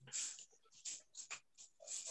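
Faint breathy noise, like a breath or sniff near a microphone, followed by a few soft clicks.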